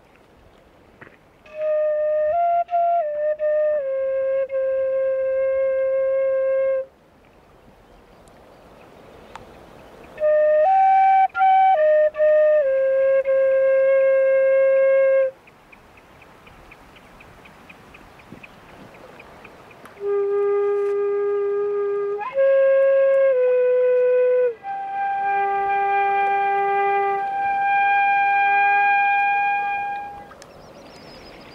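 A wooden end-blown flute playing three slow phrases. Each phrase moves through a few short notes and settles on a long held note. The last phrase is the longest and closes on a high held note.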